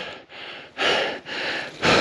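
A person breathing hard, three or four heavy breaths in a row, with the bike's engine stalled and silent.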